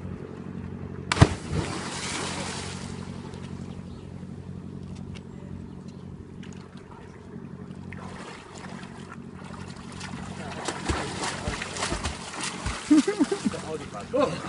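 A person jumping feet-first from a footbridge into a river: one heavy splash about a second in as he hits the water. From about eight seconds in come repeated splashes of fast swimming strokes, loudest near the end, over a steady low hum.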